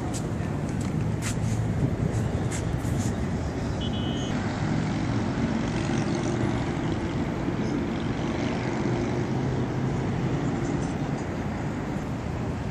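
Steady road traffic with a continuous low engine rumble. A few light clicks come in the first few seconds, and a brief faint high beep sounds about four seconds in.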